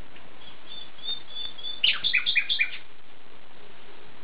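A songbird singing: a few thin high notes, then a louder quick run of about six downward-sweeping notes around the middle, over a steady hiss.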